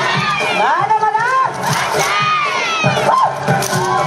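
Dancers, many of them children, shouting and calling out together: many voices overlapping in rising and falling cries.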